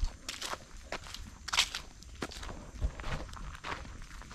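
Footsteps of a person walking on a dirt path covered in dry leaves, a crisp crunch roughly twice a second.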